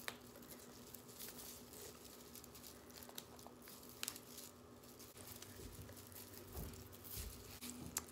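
Faint rustling and crinkling of plastic deco mesh being handled while a pipe cleaner is pushed through it and twisted tight, with a few soft ticks.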